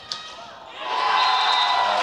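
A sharp crack of a hockey stick hitting the ball at the start, then indoor crowd cheering swelling up about a second in as a goal goes in, with steady high tones sounding through the cheer.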